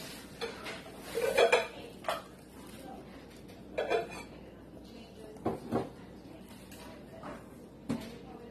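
Kitchen utensils and dishes knocking and clinking in about five separate short bursts; the loudest comes about a second and a half in.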